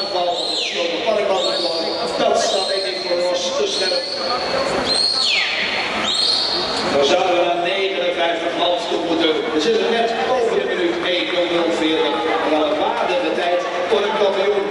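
Spectators cheering and shouting in an indoor swimming pool hall during a race finish. In the first half, a high sweeping whistle-like tone repeats about once a second, then stops.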